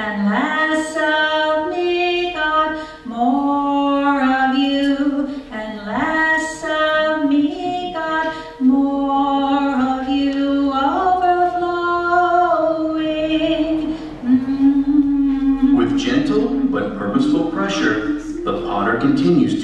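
A woman singing a slow song, holding long notes that step up and down in pitch.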